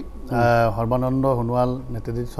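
A man's voice, drawn out at an almost level pitch for over a second, like a long held word.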